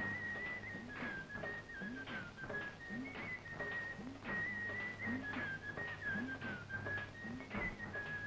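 Film background score: a whistled melody holding and stepping between a few high notes, over a steady drum beat.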